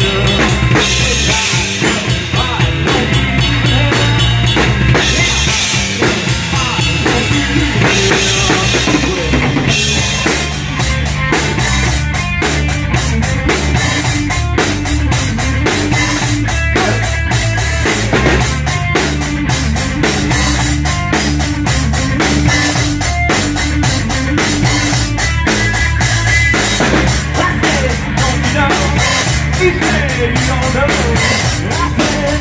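Live rock band in an instrumental passage, with the drum kit up front: a driving bass drum and snare beat under cymbals. The cymbals grow heavier about a third of the way in.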